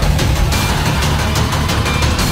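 Loud dramatic film-soundtrack music with a heavy low rumble, mixed with vehicle engine noise.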